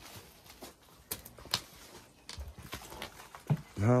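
Footsteps on loose wooden floor planks: a few irregular knocks and scuffs, uneven in loudness.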